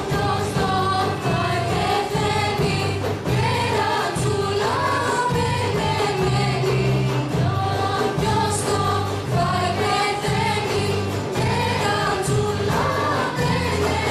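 Greek folk song in the Thracian syngathisto style, sung by a group of female and male voices in unison over strummed tambouras and a steady frame-drum beat.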